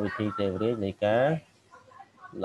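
Speech only: a man talking for about a second and a half, then a short pause.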